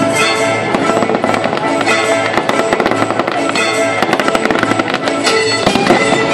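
Fireworks display going off in rapid bangs and crackles, busiest in the second half, with a loud burst near the end, over music with held notes.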